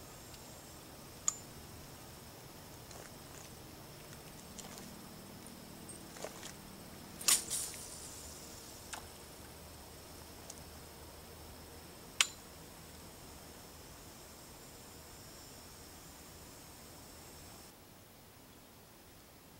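A few sharp, isolated clicks over a faint steady hiss: one about a second in, a short cluster of louder clicks about seven seconds in, and another single click about twelve seconds in.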